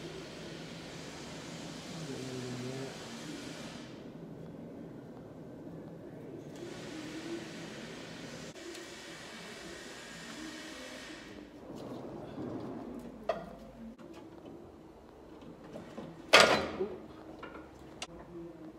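Aerosol spray grease hissing in two long bursts of about four and five seconds, with light handling noise between them. Near the end comes a single sharp knock, the loudest sound.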